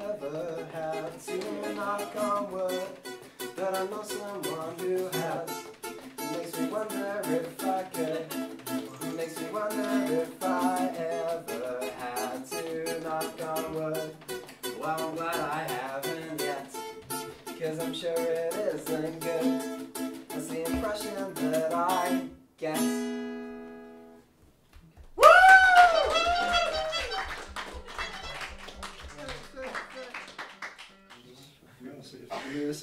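Two acoustic guitars, a nylon-string classical and a steel-string, picked and strummed together in an unaccompanied duet, ending on a chord that rings out and dies away a little over 22 seconds in. A few seconds later a separate short sound with gliding, rising-and-falling tones begins and fades out near the end.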